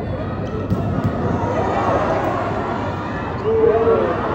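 Volleyball arena crowd during a rally: a steady din of spectators' voices, with a knock of the ball being played about a second in. A louder held shout rises from the crowd near the end as the ball is attacked at the net.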